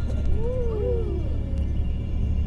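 Steady low rumble of a coach bus interior on the move, with a brief wavering, sliding tone in the first second or so.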